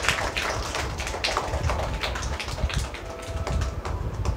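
A quick, irregular run of sharp taps and clicks with low thuds underneath.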